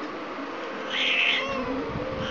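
Domestic cat giving one short, high-pitched cry about a second in, over the steady hum of an electric fan.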